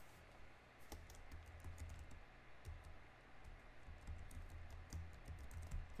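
Typing on a computer keyboard: a faint, irregular run of key clicks that starts about a second in, as a short word is typed.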